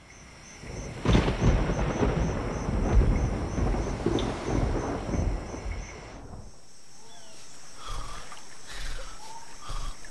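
A loud, deep rumble that swells up about a second in and lasts some five seconds before dying away. Then comes a soft steady hiss with a few short chirps.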